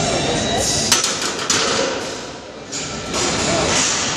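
Heavily loaded barbell (about 350 lb) set back into the steel uprights of a bench press, with a sharp metal clank about a second in and a second knock half a second later.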